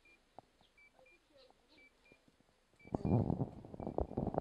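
Faint short high-pitched beeps, often in pairs, repeating about twice a second; about three seconds in, a loud low rumbling noise comes in over them.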